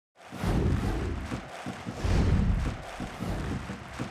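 Intro sound effect for an animated logo: deep bass booms under whooshing noise, two big swells about a second and a half apart.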